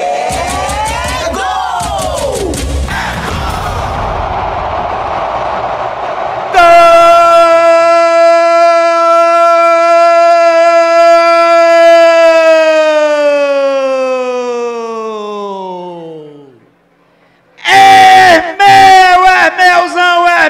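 A commentator's goal shout: a few seconds of excited yelling over crowd noise, then one long, loud held note for about ten seconds that sinks in pitch and fades near the end.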